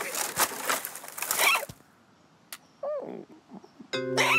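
Cartoon sound effects: leaves rustling and scrabbling as a cartoon bird rummages in a bush, with short squeaky cartoon-bird noises. After a brief pause comes a single click, then one short squeak that rises and falls in pitch.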